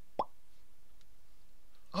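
A single short pop with a quick upward slide in pitch, about a quarter of a second in, matching the "POP" of a spider dropping in on its thread.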